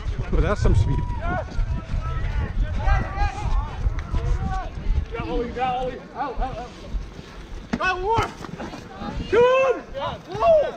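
Shouting voices of rugby players and spectators during open play, with the loudest shouts near the end. Under them, wind and running rumble on a referee's body-worn camera microphone, heavy in the first half and easing off about halfway through.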